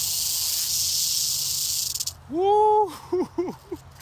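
Western diamondback rattlesnake buzzing its tail rattle, a steady high-pitched hiss given as a defensive warning, which cuts off suddenly about halfway through. A man's drawn-out vocal exclamation follows, the loudest sound, then a few short vocal sounds.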